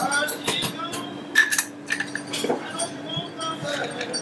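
Ice cubes and a metal barspoon clinking in a glass mixing glass as a cocktail is stirred, in irregular light clinks.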